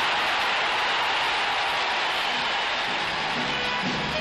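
Large football crowd cheering a goal in one steady, unbroken roar. Newsreel music fades in under it near the end.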